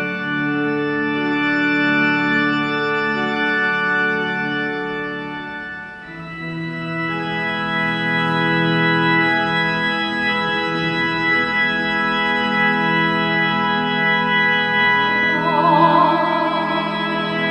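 Organ playing slow, sustained chords, moving to a new chord about six seconds in. A wavering melody line comes in over it near the end.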